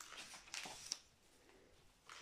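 A page of a book being turned by hand: a soft paper rustle for about a second, ending in one short, sharp flap.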